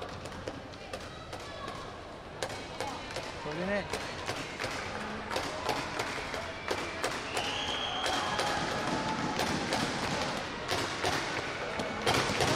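Sports-hall ambience: indistinct voices echoing in a large hall, with scattered thuds and taps throughout.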